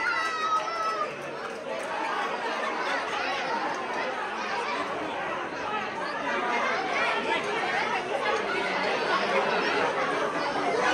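Crowd chatter: many people talking over one another at once, with no single voice standing out. A high, drawn-out voice trails off about a second in.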